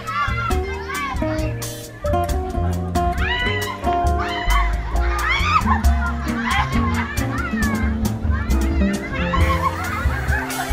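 A crowd of children shouting and squealing excitedly as they jump and grab for hanging prizes, with louder high-pitched cries in the middle. Music with a heavy bass plays underneath.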